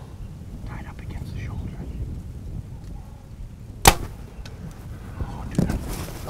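A compound bow being shot: one sharp, loud snap of the string releasing the arrow, about four seconds in.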